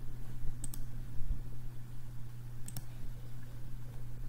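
Computer mouse clicking twice, about two seconds apart, each a quick press-and-release double click, over a steady low electrical hum.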